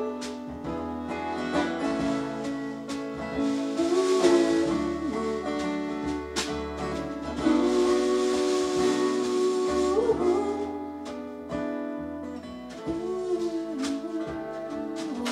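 Live acoustic folk band playing: strummed acoustic guitar, a fiddle and a hand-played snare drum, with long held melody notes that slide between pitches.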